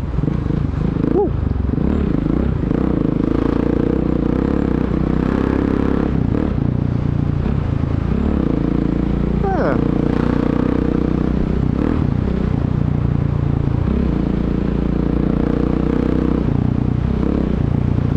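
Motorcycle engine running steadily while riding at town speed, heard from the bike with wind and road noise over it. A short rising tone about nine and a half seconds in.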